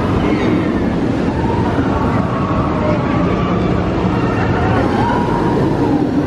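The Incredible Hulk Coaster, a steel roller coaster, running its train along the track overhead: a loud, steady roar.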